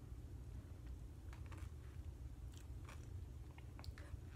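A person quietly chewing a cherry cola Oreo whose filling holds popping candy, with faint, scattered crunches and crackles from about a second in.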